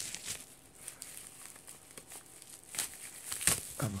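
Plastic bubble wrap being handled and unwrapped, crinkling. The crinkling is soft through the middle and comes as a louder burst near the end.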